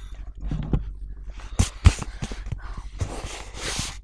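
Handling noise from a hand-held phone moving against clothing and blankets: rustling with a low rumble, two sharp knocks about halfway through and a longer rustle near the end.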